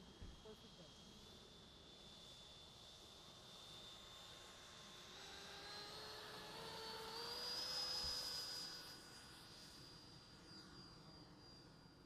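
Electric ducted fan of a 90 mm Sky Sword RC jet whining as it spools up for the takeoff run. The whine steps up in pitch several times and grows louder, is loudest about eight seconds in, then holds its pitch and fades.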